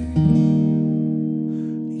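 Music: an acoustic guitar chord strummed just after the start and left to ring and fade, in a pause between the sung lines of a song.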